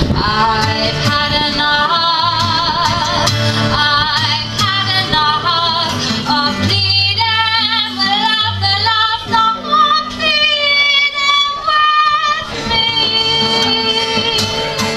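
A woman singing with vibrato and long held notes, with words hard to make out, accompanied by her own acoustic guitar.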